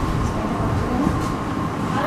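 A steady low rumbling background noise, without distinct events.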